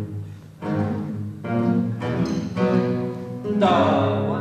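Ensemble of classical guitars playing a passage of chords, with a new chord struck about every half second to second.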